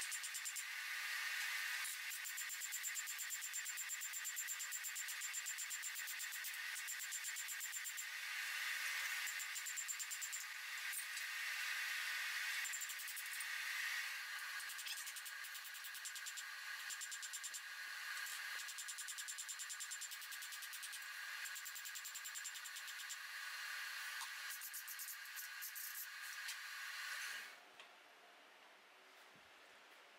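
Faint steady hiss with fine, fast crackling as the hot forged steel spear head cools on the anvil. It cuts off suddenly near the end.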